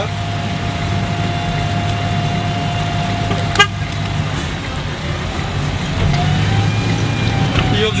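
Street traffic and idling engine rumble with a steady high-pitched tone running through it, and one sharp click about three and a half seconds in.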